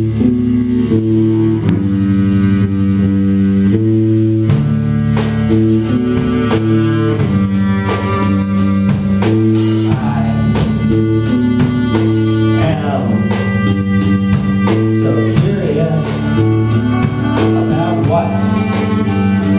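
Live indie rock band playing: held keyboard-and-guitar chords that change every second or so over a drum kit, with a steady drum beat filling in from about four seconds in.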